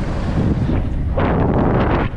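Wind buffeting the microphone of a helmet-mounted camera on a fast mountain-bike descent, a heavy rumble, with a louder rush of noise coming in about a second in.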